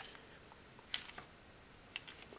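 A few faint, short clicks from a knife and its moulded plastic sheath being handled, the clearest about a second in; otherwise quiet room tone.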